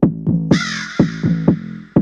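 Electronic house-music beat with a deep, pitched kick and bass hitting about twice a second. About half a second in, a harsh, noisy sound effect with a wavering pitch comes in over the beat and fades away over a second and a half.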